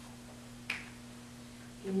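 One short, sharp click, as of a dry-erase marker being uncapped, over a steady low hum.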